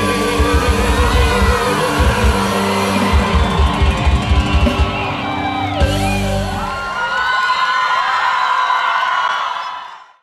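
Live band music: a clarinet melody over drums, electric guitar and keyboard. The drumbeat stops a little past halfway, and the music fades out at the end.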